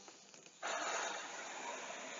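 Air hissing out of a piano accordion's bellows through the air valve as the bellows are closed after playing, a soft steady hiss that starts about half a second in, after a brief silence.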